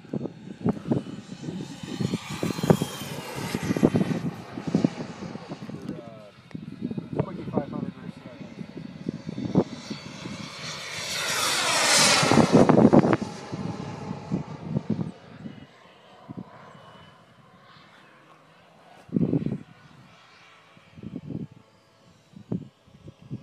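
Radio-controlled scale jet's turbine engine whining as the model flies past, swelling to a loud pass overhead about twelve seconds in with its pitch dropping, then fading into the distance. Wind knocks on the microphone throughout.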